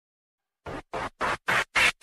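DJ scratch effect opening a dance remix: five short scratchy bursts, about three and a half a second, each louder than the last, building up to the beat.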